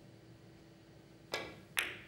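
Carom billiard balls clicking together: two sharp ball-on-ball contacts about half a second apart, the second louder, each with a brief ring, as the yellow cue ball travels into the red ball during a three-cushion shot.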